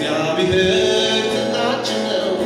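Worship song: voices singing over sustained instrumental accompaniment.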